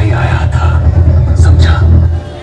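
Loud spoken dialogue played through a dhumal band's truck-mounted DJ sound system, over a heavy, steady bass rumble.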